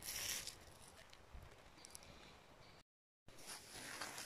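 Near silence: a faint rustle in the first half-second, then quiet background with a brief total dropout about three seconds in.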